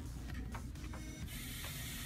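Excalibur food dehydrator's fan running steadily, with a brighter hiss joining about a second in.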